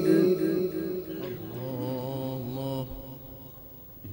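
A male Quran reciter's melodic chanted recitation: a phrase drawn out on a wavering, ornamented note that fades away about three seconds in.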